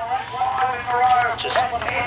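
Mostly a man's voice making announcements, with the steady low sound of sprint car engines running underneath.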